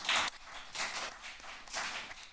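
A round of applause from a room audience, a dense patter of many hands clapping that thins out near the end.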